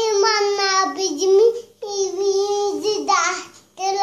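A toddler singing in a high, small voice: two long sung phrases with held notes, a short breath between them, and a third starting just before the end.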